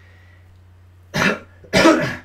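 A man coughs twice to clear his throat, two short harsh coughs about half a second apart starting about a second in, the second louder.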